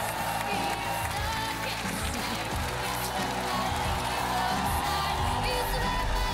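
Background music from a TV talent show, with sustained notes holding steadily.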